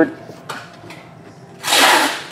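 Bowman Chrome trading cards sliding against each other as they are shuffled by hand: one brief, loud rushing swish near the end, after a faint tick about half a second in.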